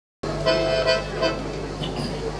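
Piano accordion playing a few short sustained chords that die away after about a second, over a steady low hum.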